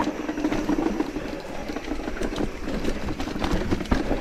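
Mountain bike rolling down a dirt forest trail: continuous tyre noise on the dirt and leaves, with many small rattles and knocks from the bike over the rough ground.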